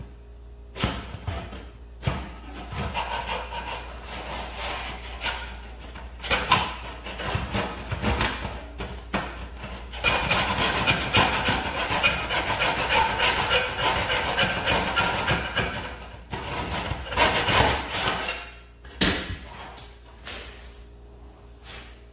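Hand saw cutting shoe molding in a plastic miter box, a run of back-and-forth strokes. The strokes grow faster and louder about halfway through, then stop a few seconds before the end.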